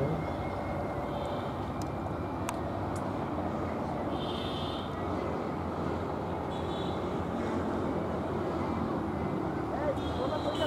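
Steady outdoor background noise, an even low rumble, with a few faint short high notes now and then.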